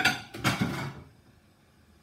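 A woman coughing, two short coughs in the first second.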